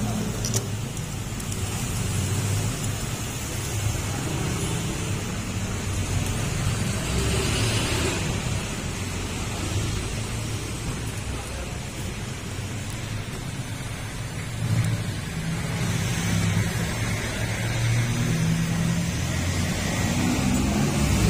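Steady background rumble with a hiss over it, without distinct tool clicks or knocks.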